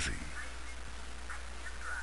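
A man's voice ends sharply on the word "he?" at the very start. Then comes a steady low hum and hiss, with a few faint, brief indistinct sounds.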